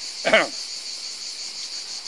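A steady, high-pitched chorus of insects in summer vegetation, with one short vocal sound from a man near the start.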